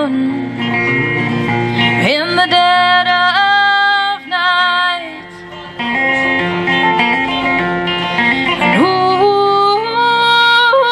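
A woman singing live to her own electric guitar accompaniment, her voice sliding up into long held notes twice, about two seconds in and near the end.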